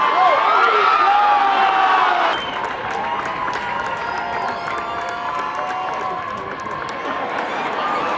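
Players and a small crowd of onlookers shouting and cheering in celebration of a goal. The cheering is loudest for the first two and a half seconds, then drops suddenly and carries on as scattered shouting.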